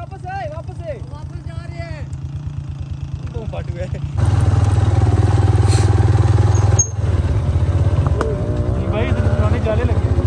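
Motorcycle engine running as the bike is ridden over a rough dirt track, with a steady low firing pulse. It gets louder about four seconds in.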